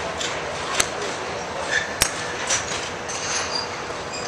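Golf club striking a ball off a driving-range mat: one sharp crack about two seconds in, with a few fainter clicks of other strikes, over steady background noise.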